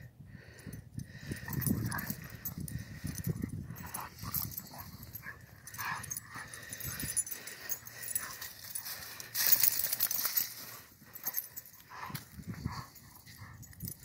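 Two puppies play-fighting on sand: irregular dog vocalisations with scuffling and pawing in the sand, and a loud rush of noise about nine and a half seconds in.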